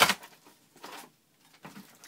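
A cardboard box being handled: one sharp knock at the very start, then a couple of faint scuffs.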